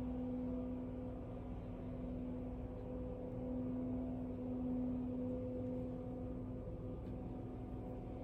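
A steady low hum on one unchanging pitch, with a faint low rumble beneath it.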